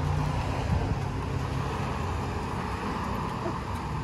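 Road traffic going by close at hand: car engines and tyre noise, a steady rumble with a hiss of tyres on the road.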